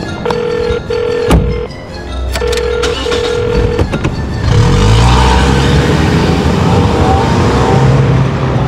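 A car door shutting with a loud knock, then a car engine revving up and pulling away from about four and a half seconds in. All of it sits under film-score music with a tone pulsing in pairs about every two seconds.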